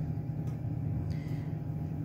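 A steady low mechanical hum, with a faint steady whine above it and no distinct sound events.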